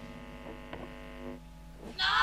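The last chord of a punk rock song ringing out on electric guitar and fading away, with a few faint clicks. After the chord dies, about one and a half seconds in, only a low steady hum is left.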